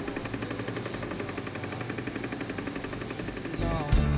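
A machine running with a rapid, even rattle, about a dozen beats a second. Music with gliding, guitar-like notes comes in near the end.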